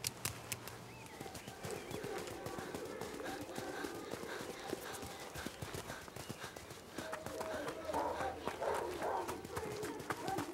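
Footsteps of several children running, a quick run of knocks. Voices call out over them from about seven seconds in.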